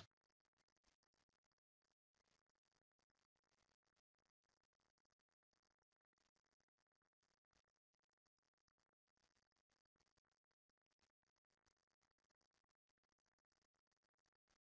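Near silence: a reading pause with only faint digital hiss.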